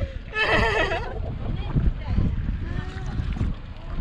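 A brief high-pitched woman's voice about half a second in, with a wavering pitch, then faint murmured voices over a steady low rumble.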